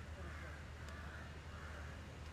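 Crows cawing, a few short calls, over a steady low hum.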